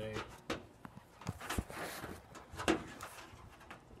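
Goats' hooves giving a few scattered knocks and taps on the body of a Willys CJ-2A Jeep as they shift about on it, with a soft rustle of mesquite leaves as a goat pulls at the branches.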